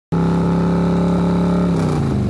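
A motorcycle engine running at steady revs, its pitch held level, fading near the end.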